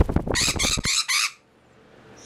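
Quaker parrot (monk parakeet) giving a quick run of harsh, high squawks while its wings beat rapidly close to the microphone. It all stops abruptly about a second and a half in.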